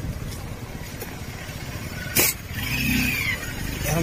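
Low, steady rumble of motorcycles and street traffic, with one sharp click about halfway through.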